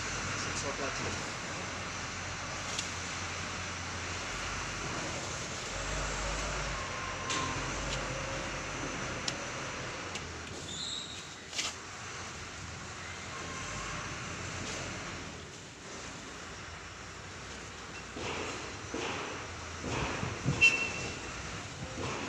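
Steady outdoor background noise with faint voices in it, a couple of brief high chirps, and a few short knocks near the end, the loudest of them about twenty seconds in.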